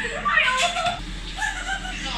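Young women's voices laughing and calling out, with no clear words.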